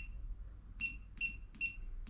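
Digital torque wrench beeping as its buttons are pressed to set the torque value: several short high-pitched beeps, a few tenths of a second apart.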